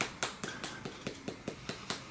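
A Tattoo Junkee liquid lipstick tube shaken quickly, rattling in a run of short clicks about five times a second, to mix a formula that has separated in the tube.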